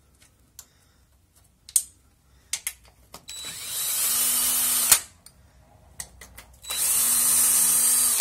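DeWalt cordless drill-driver unscrewing automatic-transmission oil-pan bolts: a few separate clicks, then two steady runs of the motor, each about a second and a half long and each ending in a sharp click.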